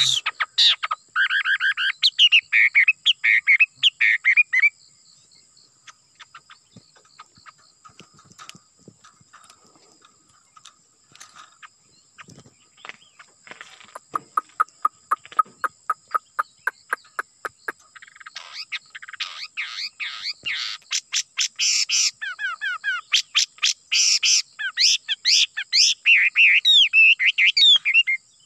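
A caged songbird singing loud, fast phrases of rapidly repeated, sliding whistled notes in the first few seconds and again through the last third, with scattered softer notes in between. A steady high insect drone runs underneath.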